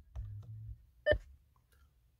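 Mercedes-Benz voice control's prompt beep from the car's audio system: one short tone about a second in, the signal that the system is listening for a spoken command. A faint low hum sits under the first part.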